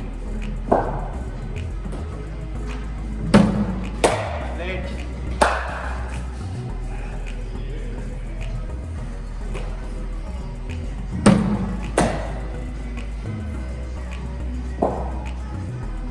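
Sharp knocks of cricket balls being struck and landing in indoor practice nets, about seven in all, two pairs of them less than a second apart. Steady background music runs underneath.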